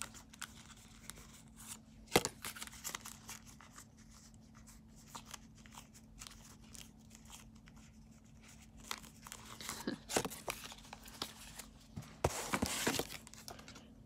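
Trading cards being handled: faint, scattered rustling and small clicks, with a sharp click about two seconds in and a louder rustle near the end.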